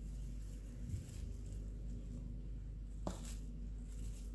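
Quiet room tone with a steady low hum; about three seconds in, a short sharp crackle of plastic cling film being handled.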